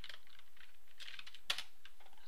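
Typing on a computer keyboard: a few sparse, light keystrokes, with one sharper click about a second and a half in.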